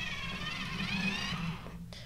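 Handheld pencil sharpener squeaking as a colored pencil is twisted in it: a high, wavering squeal that stops about a second and a half in.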